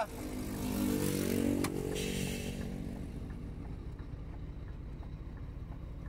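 A motorcycle passes close by: its engine note grows over the first couple of seconds, then drops in pitch and fades. After that only a steady low engine idle remains, from the stopped truck.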